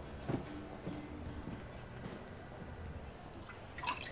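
Quiet room tone with a low hum and a soft knock early on, then near the end a few light clicks and drips as a drink is ladled into a cup.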